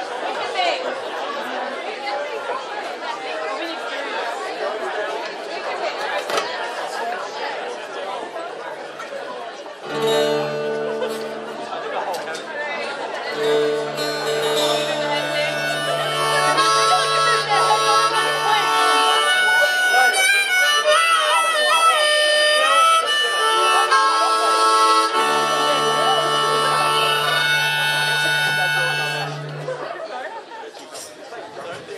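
Audience chatter for the first ten seconds, then a harmonica starts playing: held chords over a steady low note, with bent notes in the middle, breaking off just before the end.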